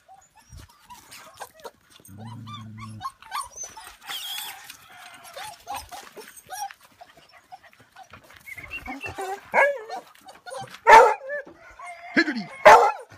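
Beagles barking and yipping, with short whining calls, growing louder in the second half; the loudest bark comes about a second before the end. A brief low hum sounds about two seconds in.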